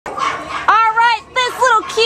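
A woman's voice speaking in a high, sing-song tone, with one long drawn-out syllable, leading into the introduction of the dog.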